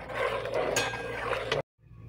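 Spatula stirring thick champurrado in a metal pot: soft scraping and sloshing with a few light clinks over a steady low hum. The sound cuts out briefly near the end.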